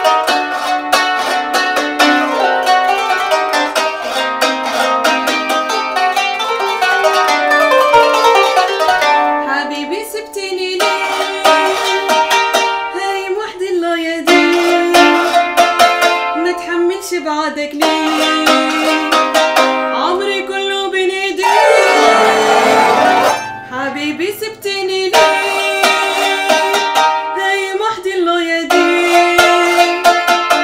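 Qanun, the trapezoidal plucked zither of Arabic music, played solo: fast runs of plucked, ringing notes, with a short dip in loudness about ten seconds in.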